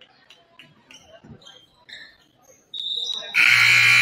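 Faint scattered squeaks and calls, then near the end a short high whistle tone followed by a loud, steady blast of a gym scoreboard horn about a second long, which rings on in the hall after it stops.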